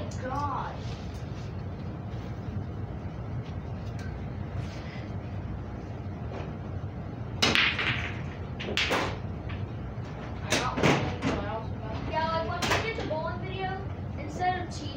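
A low steady rumble with several sharp knocks and bangs in the second half, and faint voices near the end.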